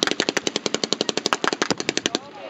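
Rapid blank gunfire: a continuous string of sharp reports at about a dozen shots a second, evenly spaced like a machine-gun burst.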